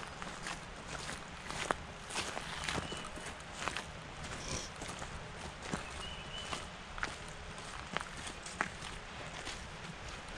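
Footsteps of hikers walking on a gravel trail strewn with dry leaves, irregular steps about one every half second to second.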